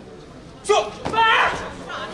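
A sharp smack of a taekwondo kick landing on a fighter's body protector, followed at once by a loud shout (kihap) lasting about half a second, in a large hall.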